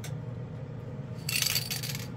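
Spray booth exhaust fan humming steadily, with a brief clinking rattle of small hard objects a little over a second in.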